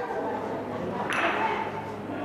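A gateball being struck: one sharp, hard click about a second in, with a brief high ringing after it. Voices murmur in the background.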